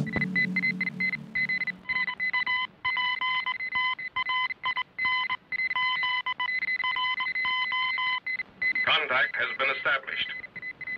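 The music's beat cuts off, leaving high, steady electronic tones that switch on and off in short, irregular breaks, with a lower tone sounding under them for a few seconds at a time. A wavering, voice-like sound comes in near the end.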